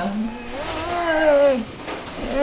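A person's voice making one long drawn-out wordless call, its pitch rising and then falling, lasting about a second and a half and stopping shortly before the end.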